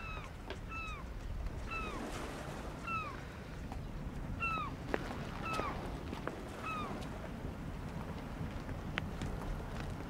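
An animal calling: about seven short, downward-falling calls, roughly one a second, which stop about seven seconds in. A steady low rumble lies underneath.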